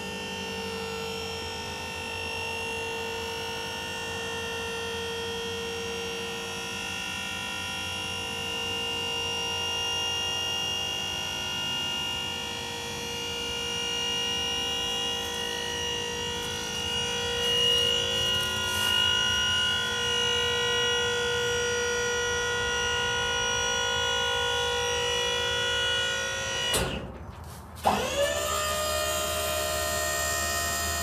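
Dump trailer's electric hydraulic pump running with a steady whine as it raises the dump bed. Near the end the whine cuts out for about a second, then starts again with a quick rise in pitch as the motor spins back up.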